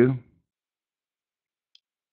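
A man's voice finishing a word, then near silence with one faint, brief click near the end.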